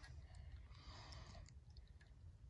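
Near silence: faint background hum with a few very faint ticks.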